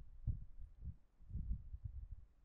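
Faint low thumps at irregular intervals, about five of them, over a low rumble.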